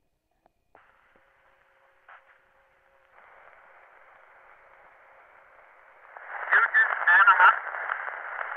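Cylinder phonograph playing a copy of an 1891 cylinder recording. Thin, hissy surface noise starts about a second in as the stylus runs in the groove, with a click and then louder hiss from about three seconds. From about six seconds a voice on the recording comes in, sounding thin and narrow.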